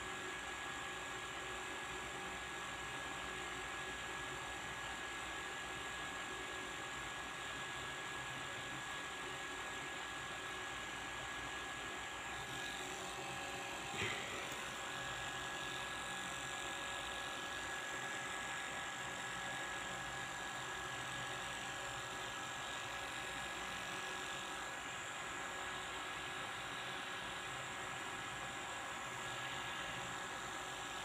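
Steady low whirring hum and hiss with a thin, steady high tone; a single faint tap about 14 seconds in.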